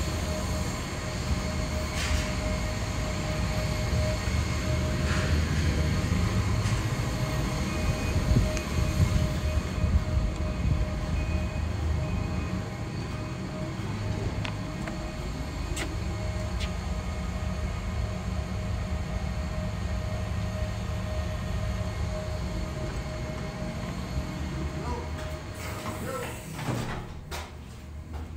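Jet airliner engines running on the airport ramp: a steady low rumble with a steady whine held over it, easing off a little about halfway through.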